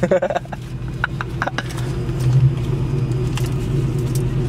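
Car engine idling steadily, heard from inside the cabin, with a few light clicks about a second in.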